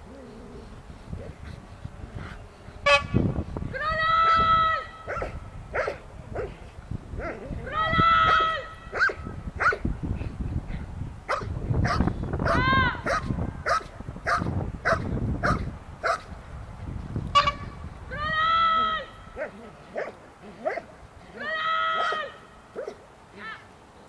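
A Belgian Malinois barking repeatedly at a decoy in a bite suit while it guards him, with several longer held pitched calls about a second each among the barks. Two sharp cracks stand out, about three seconds in and again near seventeen seconds.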